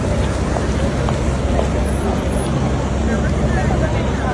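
Busy city-square street ambience: a steady rumble of traffic with people's voices chattering in the background.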